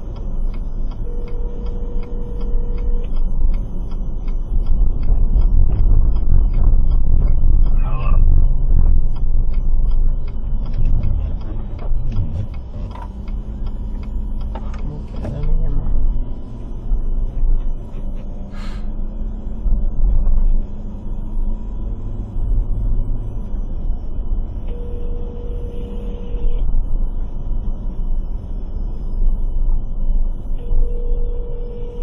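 Low rumble of a moving car heard from inside the cabin, with the turn signal ticking at the start, a few muffled words partway through, and a phone ringing near the end.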